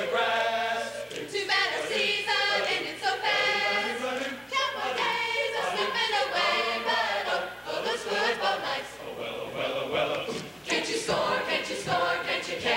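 Large mixed choir of men and women singing a choreographed show number together, with a few sharp accents near the end.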